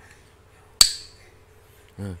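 A single sharp tap about a second in, with a short ringing tail: a phách (Vietnamese clapper) struck with a stick.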